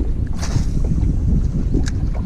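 Wind buffeting the camera microphone, a dense low rumble. A brief rush of noise comes about half a second in and a sharp tick near the end.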